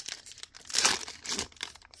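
Foil wrapper of a football trading card pack being torn open and crinkled by hand, a crackly rustle that is loudest about a second in.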